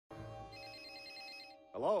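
A telephone ringing with a steady, fast-warbling ring that stops about three-quarters of a second before the call is answered with a man's "Hello?".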